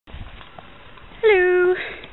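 A single high-pitched cry about a second in, dipping slightly, then held for about half a second and sliding upward at the end. Before it, a low rustle of the handheld camera being moved.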